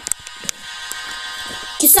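A steady electronic buzzing tone with a few faint clicks through it; near the end a voice starts rapping over a beat.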